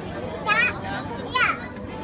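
Two short, high-pitched squeals from children about a second apart, over a crowd's chatter.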